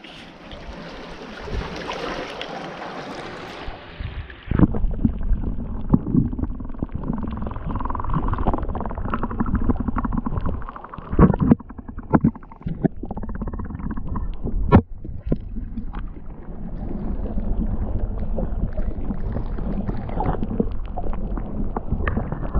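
Sea water sloshing around a GoPro held at the surface of a shallow rock pool. About four seconds in, the camera goes under and the sound turns muffled and rumbling, with water moving against the housing and scattered knocks, some of them sharp.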